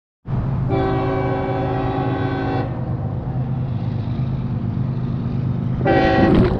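Train horn sounding a chord of several tones, one blast of about two seconds and a second beginning near the end, over a steady low rumble.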